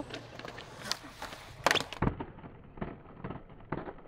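Skateboard on concrete: wheels rolling and the board clacking against the ground, with the sharpest clack a little under two seconds in. After that come a few duller knocks.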